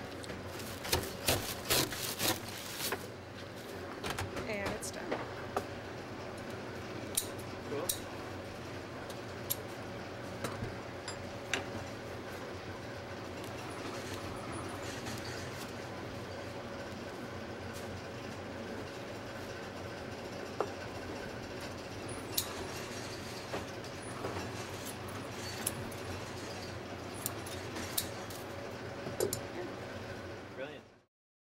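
A lever-arm broom cutting machine chops through the ends of a corn broom's bristles with a quick run of sharp cuts in the first few seconds, over a steady workshop machinery hum. After that, scissors snip now and then as a corn broom's bristles are trimmed by hand.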